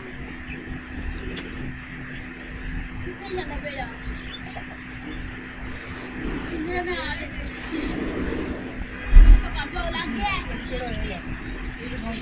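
Handling noise as a small plastic bracket fan is pressed and fitted onto a wire-mesh cage, with one loud bump about nine seconds in. A steady low hum runs underneath.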